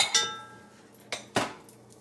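Metal kitchen utensils clinking as a metal potato masher is picked up: a ringing clink at the start, then a sharp knock about a second and a half in.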